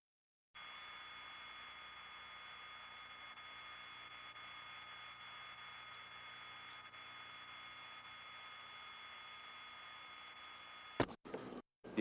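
Faint steady hiss with a few thin, unchanging high-pitched whine tones from an old videotape's audio track, starting after a brief total dropout at a tape glitch. Near the end a short click and two more brief dropouts break it.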